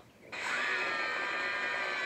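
Several cartoon characters screaming together in one long held scream that starts suddenly about a third of a second in and stays steady in pitch.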